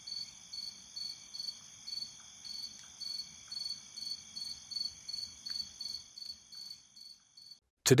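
Cricket chirping in an even rhythm, about three chirps a second, over a steady high ringing; it fades out near the end.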